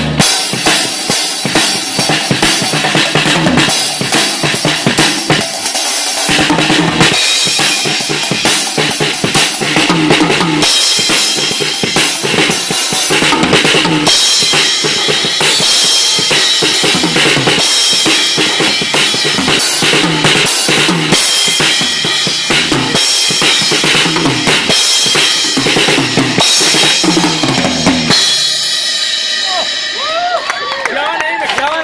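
Acoustic drum kit played in a fast, busy solo: rapid snare and tom strokes over kick drum, with Sabian and Meinl cymbals crashing throughout. The playing stops about two seconds before the end and the cymbals ring out.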